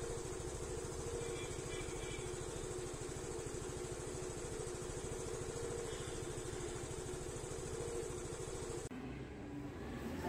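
A steady low rumble with a faint hum, the outdoor background noise of the scene, dropping away about nine seconds in.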